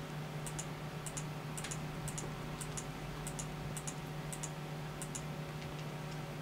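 Clicking at a computer, about two clicks a second, each a quick double tick, over a steady low hum.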